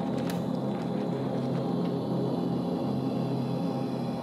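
Sustained low drone of a logo ident's soundtrack, gong-like and unchanging, with a single click about a third of a second in.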